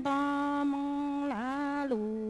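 A woman singing kwv txhiaj, Hmong sung poetry, into a microphone: long held notes in a chanting voice, the pitch bending down and back up briefly about a second and a half in.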